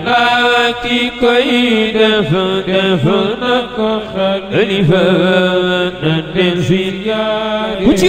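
A man's voice chanting an Islamic religious song in long, wavering, ornamented held notes.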